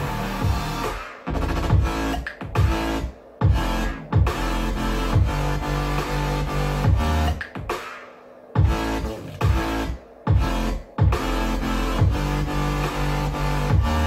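Electronic dance music with a strong bass line, played through a DIY Dayton Audio soundbar and a small subwoofer driven by a 2.1 class D amplifier, heard from across the room. The track cuts out briefly several times and comes straight back in.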